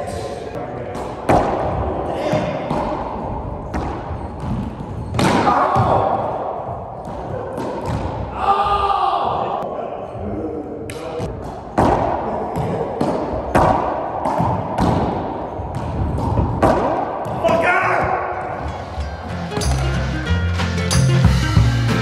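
Racquetball rally: repeated sharp smacks of the ball off racquets, walls and floor, echoing in the enclosed court, with players' voices. Music with a bass beat comes in near the end.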